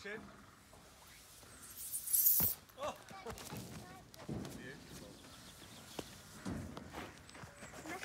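Footsteps on a wood-chip playground surface, with a short rushing hiss and a sharp thump about two seconds in and brief fragments of a child's voice.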